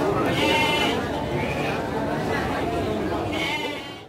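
Garut sheep bleating twice, once about half a second in and again near the end, over the talk of a crowd of people.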